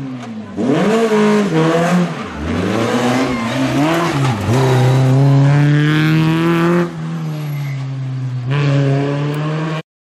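Renault Clio rally car engine revving hard, its pitch climbing and dropping several times through quick gear changes, then holding high for a few seconds before falling off and picking up again. The sound cuts off suddenly near the end.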